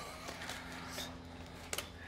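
Faint handling sounds of fingers spreading sauerkraut onto a sandwich, with two brief soft clicks, about a second in and near the end, over a steady low hum.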